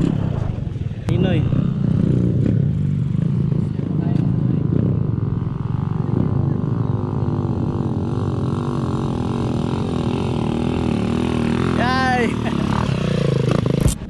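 Dirt bike engines running at idle and low revs, their pitch wavering unevenly. A short higher sound sweeps up and down near the end.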